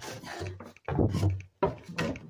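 Footsteps going down old wooden stairs, with two knocks on the treads about a second apart, heard in a small room.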